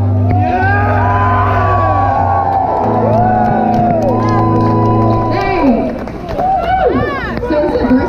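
A live band playing loudly on an outdoor festival stage, with a crowd shouting and cheering close by. The music stops about five and a half seconds in, and the crowd's shouts and whoops carry on.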